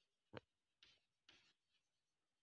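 Chalk writing on a chalkboard: a short sharp click about a third of a second in, then a few faint chalk strokes.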